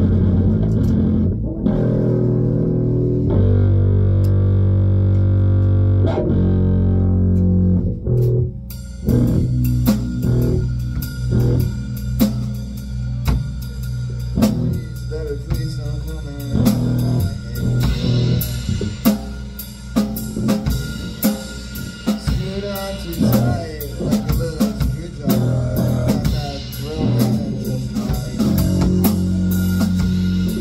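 Electric guitars played through amplifiers in a live band practice, first ringing out held low chords. About eight seconds in the drum kit comes in and the full band plays on together.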